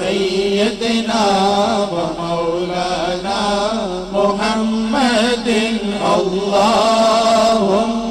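Unaccompanied naat recitation: a male lead voice sings a bending devotional melody while a male chorus holds a steady low drone underneath.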